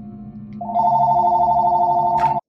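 Cordless landline phone ringing in its base: a loud electronic two-tone ring starts about half a second in and holds steady, over low background music.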